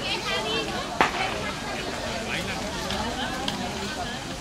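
Background chatter of people talking in Spanish near the camera, with a single sharp click about a second in.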